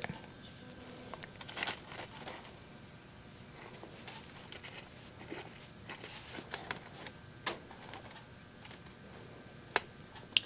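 Faint rustles and small clicks of hands working potting soil and handling seedlings in small plastic pots, with a sharper click near the end.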